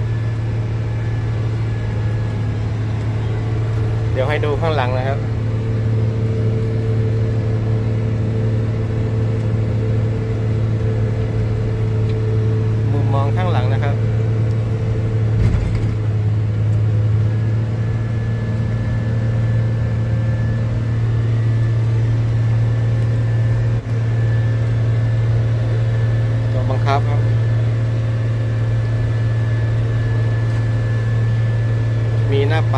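JCB Fastrac 3230 tractor's diesel engine running at a steady working speed, heard from inside the cab as it drives a rotary tiller through the soil: an even low drone with a faint steady high whine.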